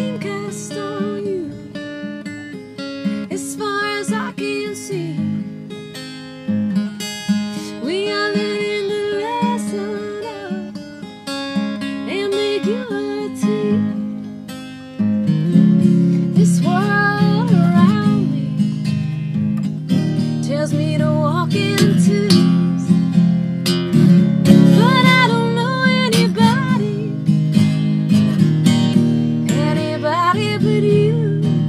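Acoustic guitar strummed while a woman sings over it. The playing grows fuller and louder about halfway through.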